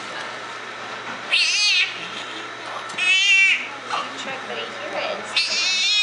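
Newborn baby crying in three loud, high, wavering wails, each about half a second to a second long, the last one starting near the end.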